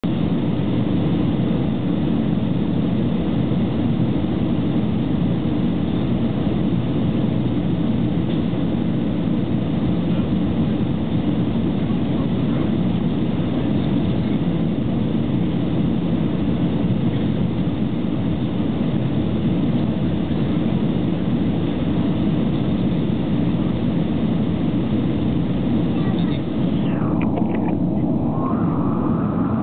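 Steady cabin noise of an Airbus A319 airliner on approach: a constant low engine and airflow rumble heard from inside the cabin.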